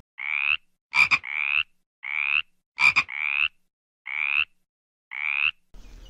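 Frog calls dubbed in as a sound effect over dead silence: six short croaks, each rising slightly in pitch, about a second apart, with two sharp double clicks between the first few.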